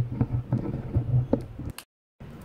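Handling noise on a homemade dynamic microphone with a business-card diaphragm: a bump, then a run of small clicks and knocks as the hand shifts its wooden handle, over a low hum. The sound cuts out suddenly near the end.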